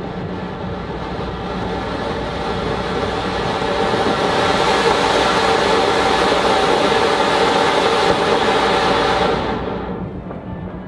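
Anar (flower-pot fountain firework) burning: a loud, steady rushing hiss of spraying sparks that builds over the first few seconds as the fountain rises to full height, then dies away quickly near the end as the powder burns out.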